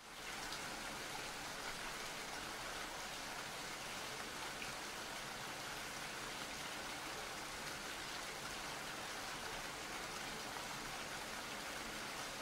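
Steady rain: a fairly quiet, even hiss of falling rain that fades in at the start and holds unchanged.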